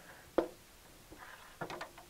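A single sharp knock about half a second in, as red channel-shaped rail pieces are set down against the aluminium frame. Fainter handling sounds follow near the end.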